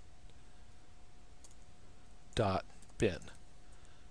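A few faint computer keyboard keystrokes as a filename is typed, over a faint steady hum. A man's voice says ".bin" near the end.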